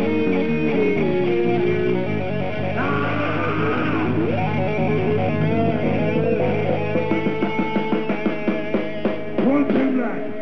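Live rock band playing, led by electric guitar with bass underneath. A quick run of sharp hits comes near the end.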